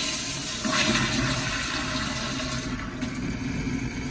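Pressure-assisted toilet flushing: the Flushmate 503 pressure vessel in a Gerber Ultraflush tank releases its compressed water into the bowl in a forceful rushing whoosh. The rush eases a little about three seconds in.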